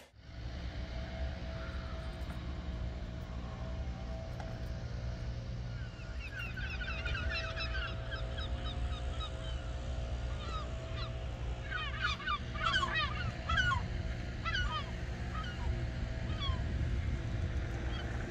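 Birds calling in quick series of short notes, starting about six seconds in and busiest past the middle, over a steady low rumble.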